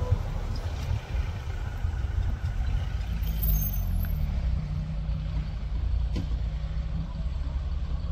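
Low, steady rumble of Mahindra Thar off-road SUVs' engines running at crawling speed.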